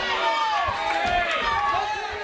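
A group of children shouting and chattering over one another, many high voices at once with no single intelligible speaker.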